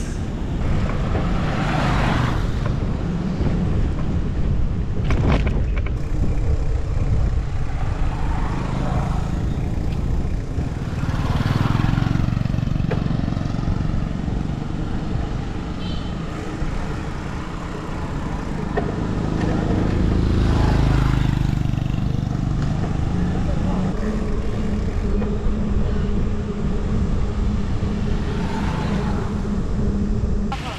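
Wind buffeting the microphone during a bicycle ride along a road, with road traffic going by; a few louder swells come as motor vehicles pass.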